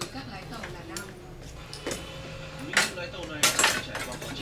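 Kitchen utensils clinking and knocking against dishes and the counter during food preparation, a few sharp knocks loudest in the second half, with low voices.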